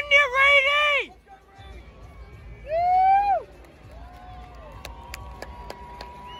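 A man's voice shouting long, drawn-out calls: one held shout at the start, a rising-and-falling call about three seconds in and a shorter, lower one a second later, over faint crowd chatter.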